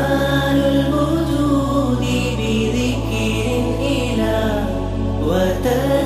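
Background Arabic nasheed: a voice sings a drawn-out, ornamented melody over a sustained low drone that shifts to a new note about every second and a half.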